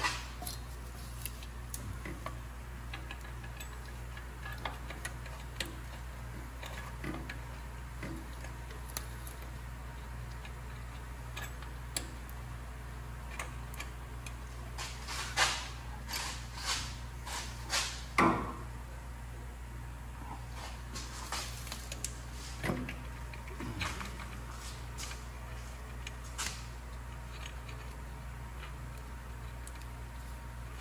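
Small metal clicks and clinks of washers and nuts being fitted by hand onto exhaust flange studs, most of them in two clusters about halfway through and a few seconds later, over a steady low hum.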